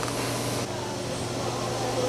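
Steady low hum with a faint hiss from operating-room equipment, with no distinct clicks or strikes.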